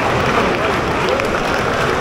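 Large football stadium crowd applauding at the final whistle: a steady wash of clapping and crowd noise.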